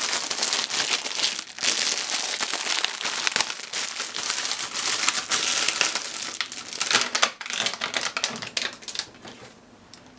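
Thin plastic packaging crinkling and rustling continuously as a bag of shimeji mushrooms is handled and opened, falling away near the end.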